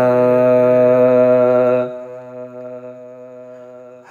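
A long, steady hummed note held by voice in an unaccompanied naat, carrying on from the end of a sung line; about two seconds in it drops to a quieter hum that holds until the next line.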